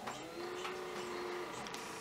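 A small machine whirring with a steady held tone for about a second and a half, then fading, with a few light clicks.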